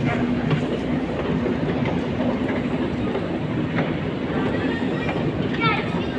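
Long metro escalator running: a steady mechanical rumble with a low hum and faint clicks. Passengers' voices murmur over it.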